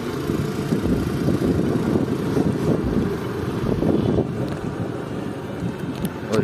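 Steady low rumble of wind buffeting the microphone while the camera moves along an open road.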